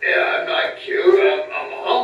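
A puppeteer's voice making loud wordless vocal sounds for a puppet, pitched and somewhat sung rather than spoken.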